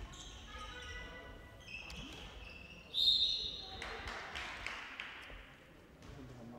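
Handball being played on an indoor court: the ball bouncing on the hall floor, shoes squeaking and players calling out. A short, loud, high-pitched squeal comes about three seconds in.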